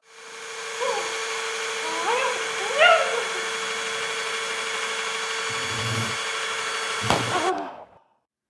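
Electric power drill spinning up and running steadily for about seven seconds, then cutting off abruptly. A few short rising cries sound over it about one, two and three seconds in.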